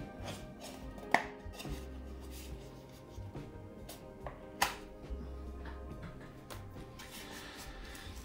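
Background music with steady held notes and a low bass line that changes about every second. A few sharp clicks sound over it, the loudest about a second in and about four and a half seconds in.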